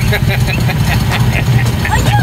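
Small engine of a ride-on amusement-park car running steadily under throttle, a continuous low drone.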